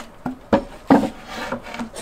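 A large wooden cutting board set down on a stone table and shifted into place: two sharp wooden knocks about half a second and a second in, then rubbing and scraping as it slides.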